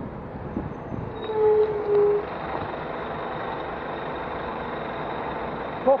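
Steady rush of traffic and wind noise as a double-decker bus runs close alongside a bicycle, with two short, steady tones about one and a half and two seconds in.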